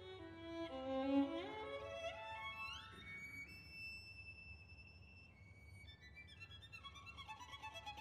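Unaccompanied violin playing a solo passage: a quick upward run about a second in climbs to a long, high held note, and a run of notes comes back down near the end.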